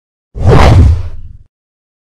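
A whoosh sound effect with a deep boom underneath: one sweep of about a second that swells quickly and fades out, an edited intro transition for the title card.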